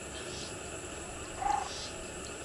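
Steady faint outdoor background with one brief animal call, a single short note, about one and a half seconds in.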